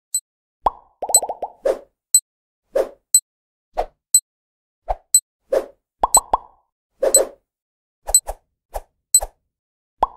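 Cartoon-style sound effects for an animated countdown: a string of short, hollow pops and plops at irregular spacing, mixed with sharp high clicks, with a quick rattling run of pops about a second in and dead silence between the sounds.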